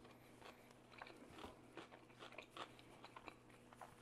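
Faint chewing of a mouthful of soft biscuit sandwich with the mouth closed: soft, irregular little mouth clicks.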